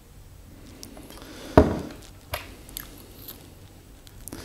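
Water trickling faintly from a glass bottle into a small sample vial. About a second and a half in there is a single sharp knock as the glass bottle is set down on the table, followed by a few light clicks from the vial being handled.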